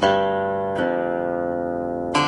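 Slow background music on a plucked string instrument: one note struck at the start and another just under a second in, each left to ring and die away slowly.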